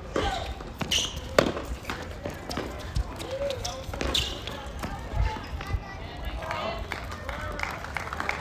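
Tennis ball struck by rackets and bouncing on a hard court during a rally: a few sharp pops in the first second and a half, and another about four seconds in.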